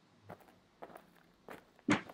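Footsteps: four slow, quiet steps, the last one louder.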